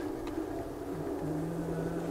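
Steady low hum of room noise in a large lecture hall, with a faint steady low tone joining about a second in.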